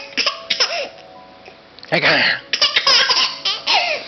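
A baby laughing in short, high-pitched bursts of giggles, once at the start and again in a run through the second half.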